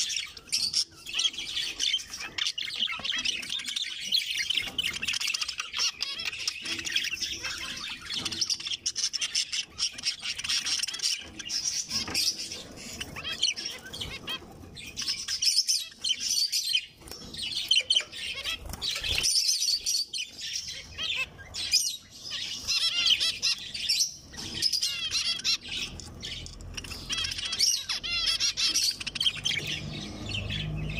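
A flock of caged zebra finches calling and singing at once: a continuous, busy chatter of many short, high chirps and calls overlapping one another.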